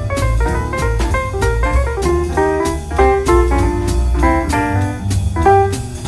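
Live jazz quartet playing: guitar and piano over a walking double-bass line, with the drummer's cymbal keeping a steady beat.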